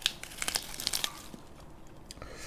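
Crisp lettuce leaf crinkling and crackling as it is handled, a quick cluster of sharp rustles in the first second or so, then it quietens.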